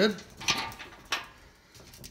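Two brief handling knocks, about half a second and a second in.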